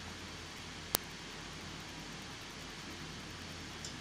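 Cinnamon tea being poured from a pan through a metal tea strainer into a cup: a faint steady hiss, with one sharp click about a second in.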